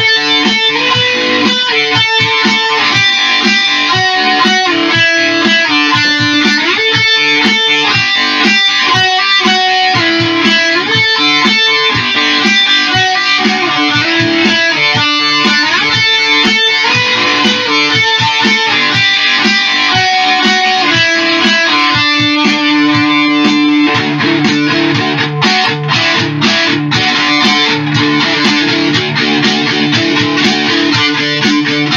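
Electric guitar playing a rock riff on a nursery-rhyme tune: a continuous run of quick picked notes, with a longer held low note about three quarters of the way through.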